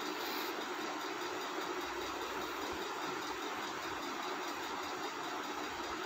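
Steady hiss of background noise with no other sound: the open microphone in a pause of the narration.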